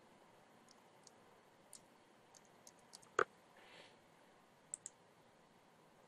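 Faint, scattered clicks of a computer mouse and keyboard, with one louder click about three seconds in and a quick pair of clicks near five seconds.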